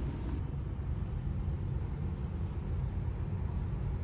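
Steady low rumble of road and tyre noise inside the cabin of a moving Tesla electric car at highway speed.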